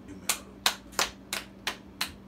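Hand clapping: five sharp claps evenly spaced at about three a second.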